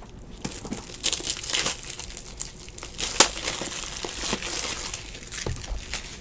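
Foil trading-card pack wrappers crinkling and tearing as packs are ripped open, in an irregular run of crackles with a sharper one a little after three seconds in.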